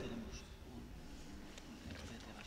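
Quiet room tone with a low hum and a few faint clicks and rustles of papers being handled at a panel table.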